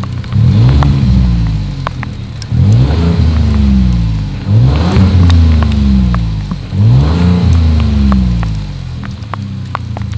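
2020 Ford Expedition's 3.5-litre twin-turbo EcoBoost V6 revved four times, heard at its single exhaust outlet. Each rev climbs quickly and falls back, about two seconds apart, and the engine settles to idle near the end.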